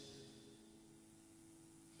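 Near silence in a pause between sung lines: the voice fades out just after the start, leaving only a faint steady low hum.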